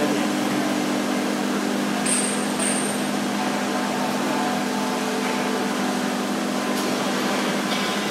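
Electric grout injection pump running with a steady motor hum, with a brief high-pitched whistle about two seconds in.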